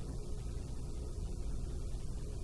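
Steady low hum of room tone, with no speech or distinct events.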